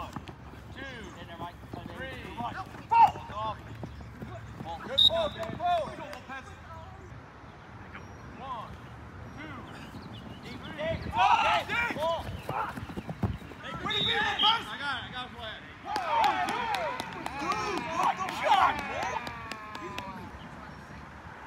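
Flag football players shouting and calling out to each other across an open field. Several overlapping voices come in bursts, loudest about eleven seconds in and through the last four seconds, with scattered sharp clicks.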